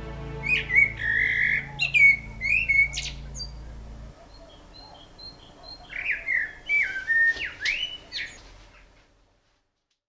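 Eurasian blackbird singing two phrases of fluty, whistled notes with quick slurs, the second starting about six seconds in. Held background music notes sound under the first phrase and stop about four seconds in.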